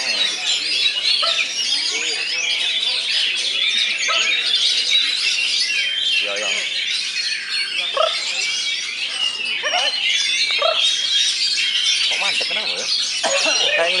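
Caged oriental magpie-robins (kacer) singing at the same time, a dense chorus of overlapping whistled phrases that never lets up. People's voices murmur underneath.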